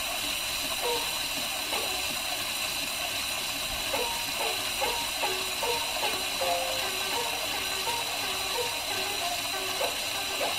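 Gidayū playing from a 78 rpm shellac record: futozao shamisen notes plucked over steady surface hiss. The notes are sparse for the first few seconds and come quicker from about four seconds in.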